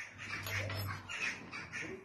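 A domestic animal calling about four times in quick succession.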